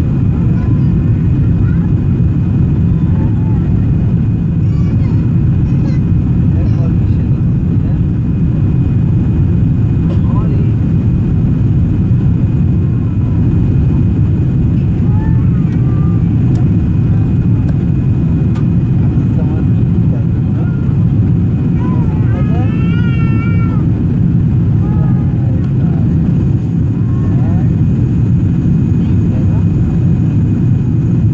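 Steady, loud cabin noise of a jet airliner climbing after take-off: a deep, even rumble of engines and airflow. Faint voices come through it, with a short high-pitched wavering call about two-thirds of the way through.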